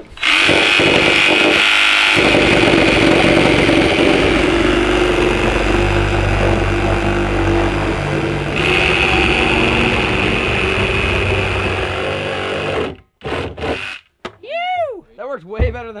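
Cordless reciprocating saw cutting through the wall of a plastic 55-gallon drum, running steadily for about thirteen seconds with a change in tone about two-thirds of the way through, then stopping. Short knocks and voices follow near the end.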